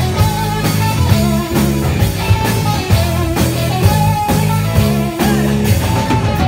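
Live rock band playing an instrumental passage: electric guitar over bass and drum kit, with a steady beat.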